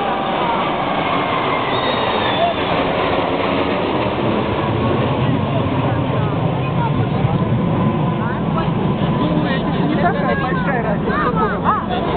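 Jet engine noise from a formation of nine fighter jets flying overhead: a loud, continuous rush with slowly falling tones as the jets pass. Crowd voices come in near the end.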